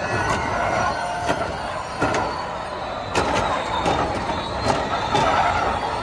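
Formula E electric race cars driving past on the circuit: a high electric whine from motor and gearbox over a steady rush of tyre noise, broken by many short sharp clicks.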